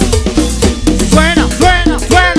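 Live dance-band music played loud: a steady bass under cowbell-like percussion, with a melodic line that glides up and down in pitch.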